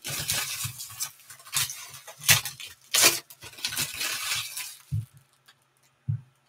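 Foil trading-card pack wrappers crinkling as the packs are torn open and handled, in a run of crackly rustles with a few sharper rips, stopping about five seconds in.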